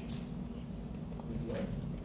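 Room tone with a steady low hum, a brief click right at the start, and a short spoken "What?" near the end.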